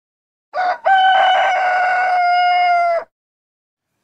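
Rooster crowing: one short note, then a single long held call of about two seconds that sags slightly in pitch at the end.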